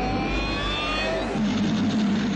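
A film sound effect: a rising electronic whine made of several parallel pitches, climbing over about the first second, over a steady low drone, like a craft powering up or taking off.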